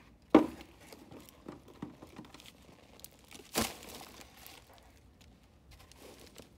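Gloved hands handling a plastic nursery pot and soil while repotting an aloe vera: crinkling and rustling, with two sharp knocks, the loudest just after the start and another about three and a half seconds in.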